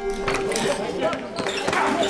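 Shouting voices and a few dull thumps of a scuffle between men, over a steady sustained music drone from the soundtrack.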